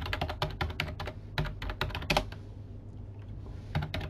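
Computer keyboard typing: a quick run of keystrokes for about two seconds, then a pause and a couple more key clicks near the end.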